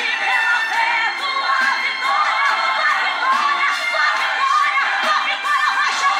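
A congregation shouting and cheering, many voices overlapping, over music.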